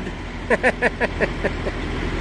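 A man laughing in about six short, quick bursts, over a steady low engine rumble.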